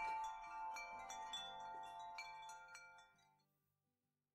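Soft chime tones struck one after another and left ringing over low held notes of background music, fading out to silence about three and a half seconds in.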